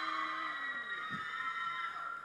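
Audience screaming and cheering in one sustained high-pitched cheer for a presenter who has just introduced himself.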